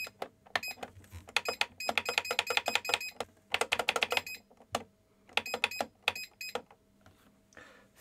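Incubator control panel beeping with each press of its UP button, in quick runs of several beeps a second with short pauses between runs, as the temperature setpoint is stepped up towards 50.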